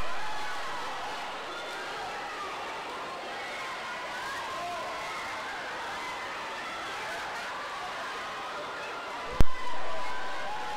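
Crowd of spectators shouting and cheering in an echoing indoor pool hall during a swim race, a steady wash of many overlapping voices. A sharp crack sounds near the end, followed by a brief swell of noise.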